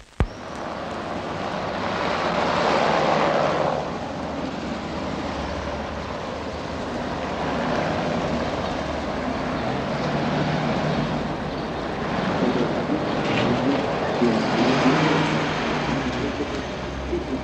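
Street traffic: cars passing over cobblestones, one swelling past a few seconds in. Near the end a car engine comes close as it pulls up.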